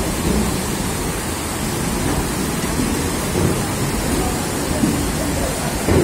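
Steady, even rushing noise of heavy rain falling.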